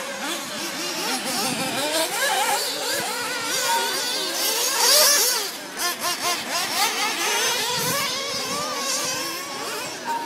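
Several 1/8-scale nitro buggies' small glow-fuel two-stroke engines running at high pitch and revving up and down as they race, their pitches overlapping. The sound swells to its loudest about five seconds in.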